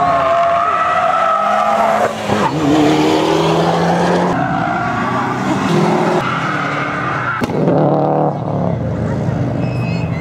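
Cars driven hard on a race circuit: engines revving, rising and falling in pitch, with tyres squealing through the corners.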